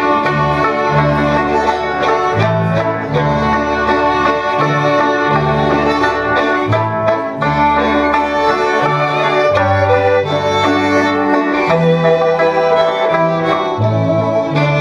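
Folk dance music with a fiddle carrying the tune over a steady stepping bass line, played at an even walking pace.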